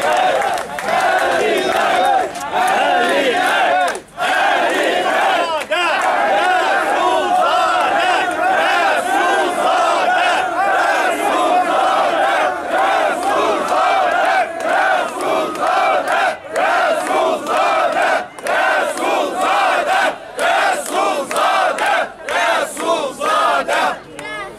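A large crowd of demonstrators shouting together, many voices at once, loud and continuous, with a brief lull about four seconds in.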